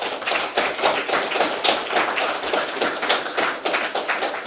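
Audience applause: many people clapping at once, a dense, uneven stream of hand claps.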